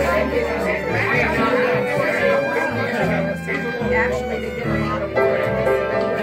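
Small acoustic band playing a song live, with upright double bass notes under piano and acoustic guitar, and a voice over them.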